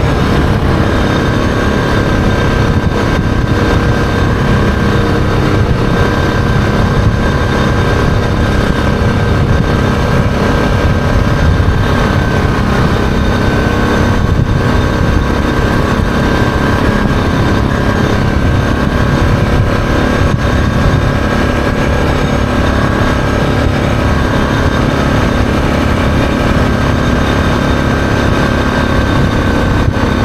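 Yamaha Grizzly ATV engine running steadily at a constant cruising speed, with no change in pitch, under a steady rush of riding wind.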